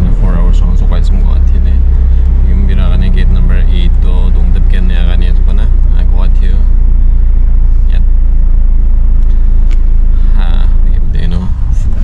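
Steady low rumble of a car driving, heard from inside the cabin, with voices talking at times over it.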